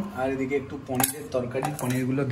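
Cutlery and dishes clinking in short sharp clicks, the clearest about a second in, under a person's voice talking.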